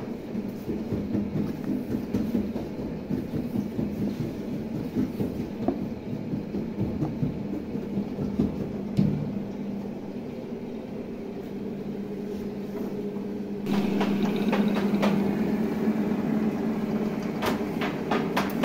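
Wooden rolling pin rolled back and forth over flour-dusted dough on a wooden board, a soft uneven rumbling in repeated strokes. About three-quarters of the way through, a louder steady machine hum with clicks sets in: a bakery dough sheeter.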